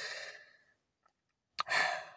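A man's breathing between sentences: a soft breathy tail fades out in the first half-second, then a mouth click and a short breath or sigh come near the end.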